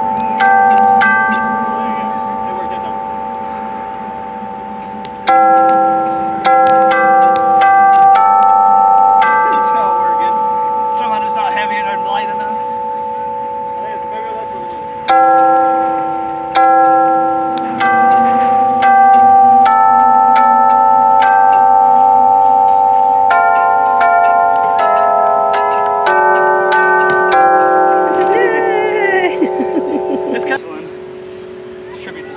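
Giant walk-on floor piano sounding bell-like notes as someone steps on its keys: each step starts a ringing tone that holds and slowly fades. New notes come in several clusters, overlapping into chords.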